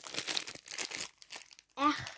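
Super-sticky slime being pressed and pushed into its container by hand, giving a run of irregular crackles and crinkles that dies away about a second and a half in.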